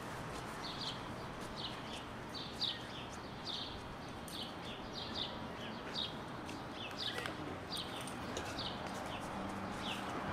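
A small bird chirping over and over, short high chirps that slide downward, about two a second, over a steady outdoor background hum.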